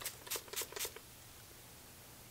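Fragrance mist spray bottle spritzed onto a paper card: a few short, hissy spritzes in the first second.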